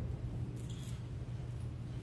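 Quiet room tone with a steady low hum and a brief soft rustle about half a second in.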